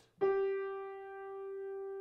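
A single mid-range note struck on a grand piano and left to ring, held steady with little fading until it is cut off near the end.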